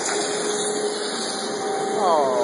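Shop machinery running: a steady hissing rush with a held hum tone underneath.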